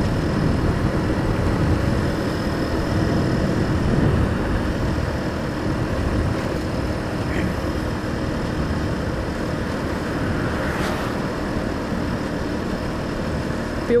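A 150cc GY6 Chinese scooter's single-cylinder four-stroke engine running at a steady cruise, heard under wind noise on the camera microphone while riding.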